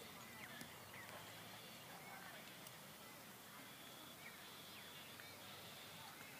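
Near silence: faint outdoor background noise with a few faint, short chirps.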